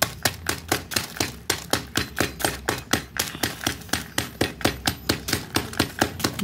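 A metal hammer repeatedly pounding dry baked clay chunks on a plastic sheet, crushing them into smaller pieces and grit. The knocks are quick and evenly spaced, about five a second.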